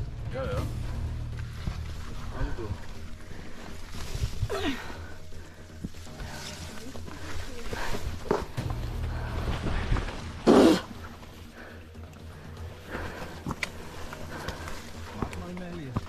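Background music with faint, indistinct voices, and one short loud sound about ten and a half seconds in.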